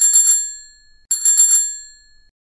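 A bicycle bell rung twice, about a second apart. Each ring is a quick trill of strikes that rings on and fades.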